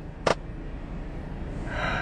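One sharp hand clap just after the start, the last in a slow run of claps, then a breathy gasp of laughter building near the end.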